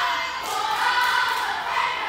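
Girls' cheerleading squad chanting a cheer in unison, many young voices together.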